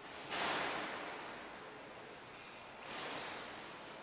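Two breath-like rushes of noise close to the microphone: a sharp one about a third of a second in that fades over about a second, and a softer one near three seconds.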